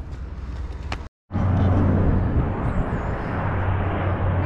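Aeroplane flying overhead, a steady loud rumble that starts suddenly after a brief dropout about a second in, with wind on the microphone.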